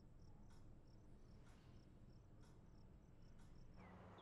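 Faint night ambience of crickets chirping in short high pulses, with a soft tick about once a second over a low hum. Near the end it switches to daytime birds calling with quick falling whistles.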